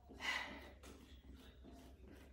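A woman exercising takes one short, audible breath about a quarter second in, then only faint room tone.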